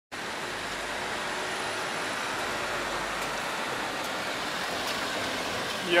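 Steady outdoor street ambience: an even hiss of traffic and city noise.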